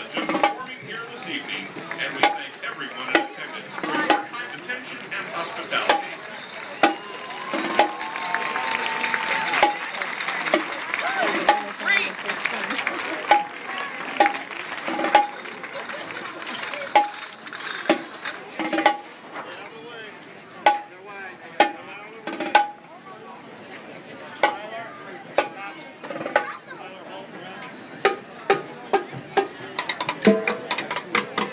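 Marching band percussion playing a steady cadence, a sharp hit about once a second, over the talk and noise of a stadium crowd that swells briefly around ten seconds in.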